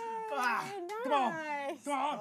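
Men's voices: a long held sung note slides slowly down in pitch and ends about a third of a second in, then voices call out or sing with sharp rises and falls in pitch.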